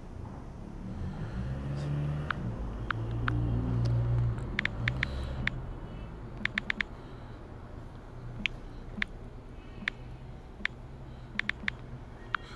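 Typing on a phone's touchscreen keyboard: a series of short, sharp taps, some single and some in quick runs of three or four. A low rumble underlies the first few seconds.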